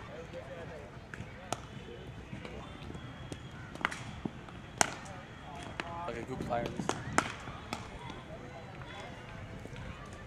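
Cricket balls being struck by bats and pitching in the practice nets: a handful of sharp, separate knocks over several seconds, the loudest about five seconds in, over the chatter of players.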